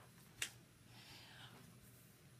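Near silence with a single short click about half a second in, then a faint rustle, from a hand handling a paper worksheet on a desk.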